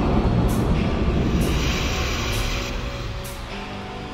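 Intro music and sound effects: a loud rumbling noise that fades out, with a high crisp tick about once a second. Sustained pitched notes come in near the end.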